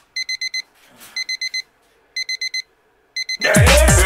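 Digital alarm clock beeping in quick sets of four, one set about every second. A little over three seconds in, loud electronic music with a heavy drum beat starts up and cuts across it.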